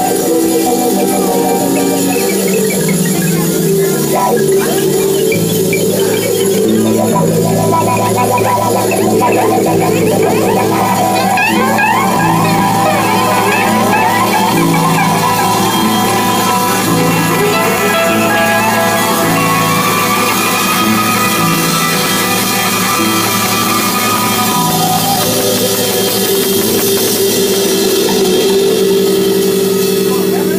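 Live psychedelic rock band playing electric guitars over a stepping bass line, with drum kit and congas. The cymbals grow brighter near the end.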